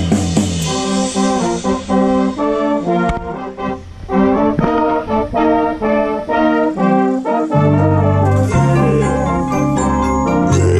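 Drum corps brass section playing a chordal passage, the chords changing about every half second. Deep low-brass notes come in strongly about three-quarters of the way through.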